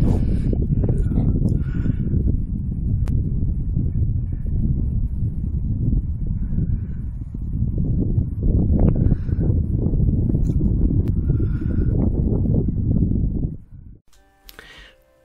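Loud, gusting wind noise buffeting the microphone. It cuts off abruptly just before the end.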